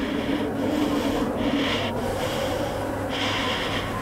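Heavy, laboured breathing of a high-altitude climber, rhythmic hissing breaths about once a second, over a steady rush of mountain wind.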